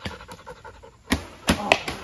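A bow shot: a sharp bowstring slap a little past a second in, then three more sharp clacks in quick succession, over steady rapid panting.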